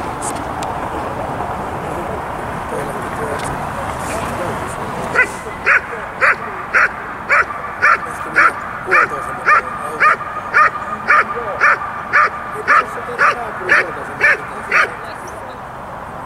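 A dog barking in a steady rhythm, about two barks a second, starting about five seconds in and stopping about a second before the end.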